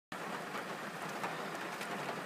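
Heavy rain falling on a car, heard from inside the cabin: a steady hiss with faint scattered ticks of drops.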